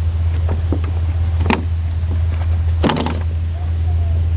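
A steady low hum with two sharp clicks, one about a second and a half in and one near three seconds in.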